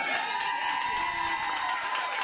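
Small audience clapping and cheering, with one long, high, steady held cry over the clapping.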